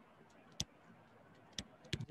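Three short, sharp clicks over faint room tone, the first the loudest: a stylus tip tapping on a pen tablet while handwriting is being written on screen.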